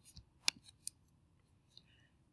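Several faint, short clicks in near quiet, the loudest about half a second in.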